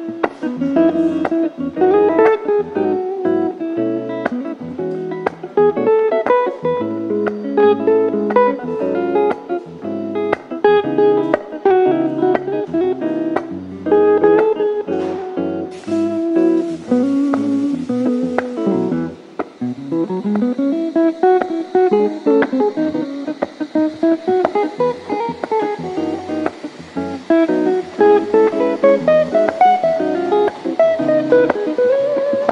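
Solo guitar instrumental: a plucked melody over chords and low bass notes. A brief hiss comes in about halfway through, and runs of notes climb and fall through the second half.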